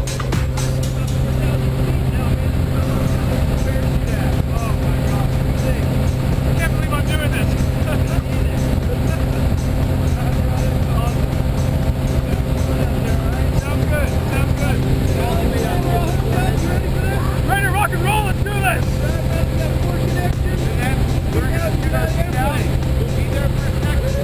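Small high-wing plane's engine and propeller droning steadily, heard from inside the cabin during the climb to jump altitude. Voices call out over the drone about two-thirds of the way through and again near the end.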